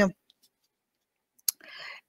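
Dead silence in a pause of the talk. About one and a half seconds in comes a single sharp click, followed by a short, soft intake of breath just before the speaking resumes.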